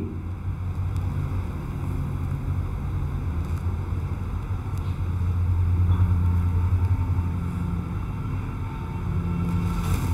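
A low, steady rumble or hum with no speech, swelling slightly in the middle.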